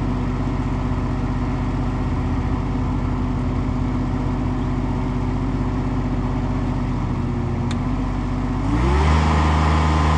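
The Kubota 24.8 hp diesel engine of a Ditch Witch HX30-500 vacuum excavator running at a steady low speed, then throttled up near the end, its pitch rising and settling at a louder, higher speed.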